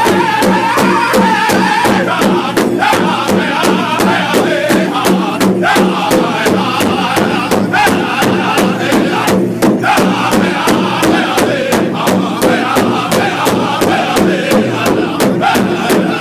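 Powwow drum group: several men singing together in loud chanted phrases over a large shared bass drum that they strike in unison with drumsticks, a steady beat of about three strokes a second.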